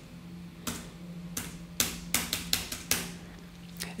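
Computer keyboard keys clicking as the space bar is tapped repeatedly, about seven sharp clicks roughly a third to half a second apart.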